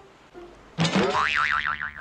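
Cartoon-style comic 'boing' sound effect starting just under a second in, its pitch wobbling rapidly up and down several times.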